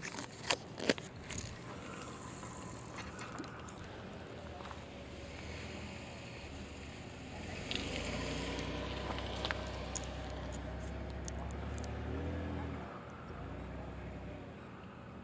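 A few sharp clicks as fishing tackle is handled, then a minivan's engine running low and steady, louder from about eight seconds in and stopping near the end.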